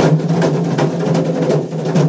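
Folk percussion music: a hide-headed hand drum beaten in a steady rhythm over a steady low held tone.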